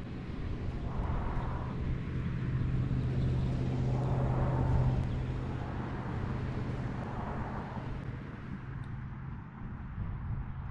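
Distant engine drone, a low steady hum that swells to its loudest about five seconds in and then fades away, typical of a motor vehicle passing at a distance.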